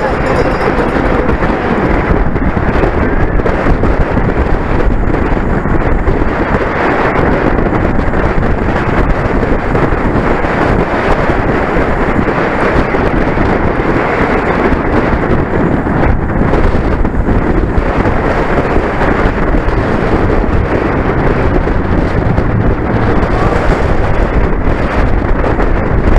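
Loud, steady wind noise buffeting the microphone of a handlebar-mounted camera on a racing bicycle at speed.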